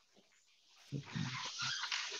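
Handling noise: rustling with a few soft low knocks close to the microphone, starting about a second in after a near-quiet start.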